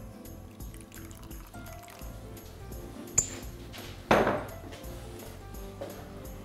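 Background music, with oil being poured and stirred in a glass bowl. A metal spoon clinks once on the glass about three seconds in, and about a second later a brief, louder swish fades within half a second.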